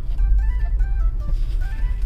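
Steady low rumble of a car's engine and road noise heard inside the cabin, with faint music playing over it.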